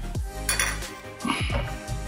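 A metal utensil clinking and scraping against ceramic plates during food prep, a sharp click about half a second in and a short clatter near the middle. Background music with a deep, falling bass kick plays underneath.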